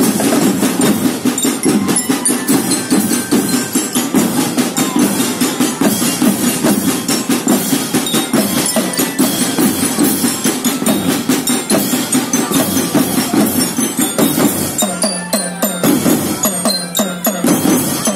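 Children's marching drum band playing: snare and tenor drums beating a fast, dense rhythm, with a melody rung out on bell lyres over it.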